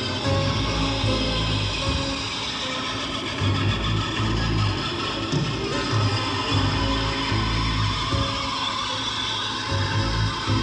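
Live rock band playing a song at a concert, with heavy bass notes under guitars and keyboards.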